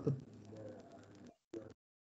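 The end of a spoken word, then faint background noise with a low hum from an open microphone on a video call, a short faint sound about one and a half seconds in, and then the line cuts to silence.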